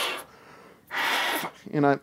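Unpitched breath blown hard through a trumpet's leadpipe, two short blasts about a second apart, to push the remaining spitball cleaning fluid out of the horn.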